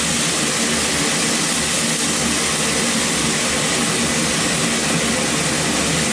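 Steady sizzling hiss of raw mango pieces cooking in a kadai of hot mustard-oil tempering, over a low hum.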